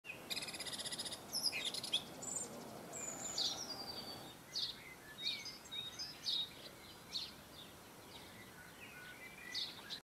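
Garden birds singing and chirping: a fast, buzzy trill in the first second, then a scattered run of short high chirps and whistled notes, over a steady low background noise.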